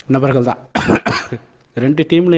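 A man talking in Tamil, broken by a short cough just before the one-second mark.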